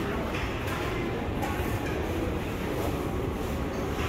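Steady low rumble of a large indoor hall's ambience, with faint light ticks scattered through it.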